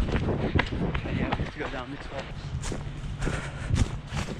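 Running footsteps, a series of quick irregular impacts, with a person's voice heard briefly around the middle.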